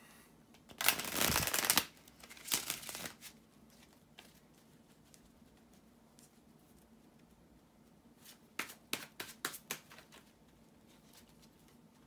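A deck of tarot cards being shuffled by hand. A loud burst of shuffling comes about a second in and a shorter one near three seconds, then after a quiet pause a quick run of short card clicks around nine to ten seconds.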